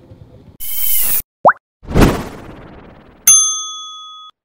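Logo sting sound effects. A loud burst of hiss comes first, then a quick rising swoop and a deep impact that dies away, and near the end a sharp strike with a bright bell-like ding that rings on.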